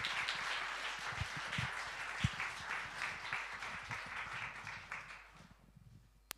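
Audience applauding, dying away about five and a half seconds in.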